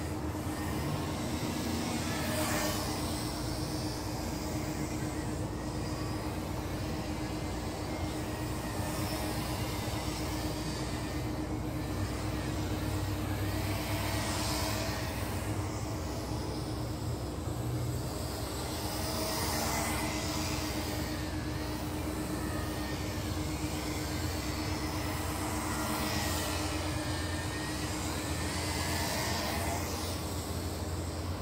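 UTO U921 camera quadcopter's motors and propellers whirring in flight over a steady hum. The whine rises and falls in pitch several times as the quad manoeuvres.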